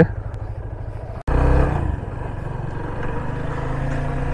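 Yamaha FZ25's single-cylinder engine idling with an even pulse. After an abrupt break about a second in, it runs louder and steadier as the motorcycle rides along.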